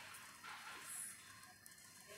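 Near silence: faint room tone with a light hiss.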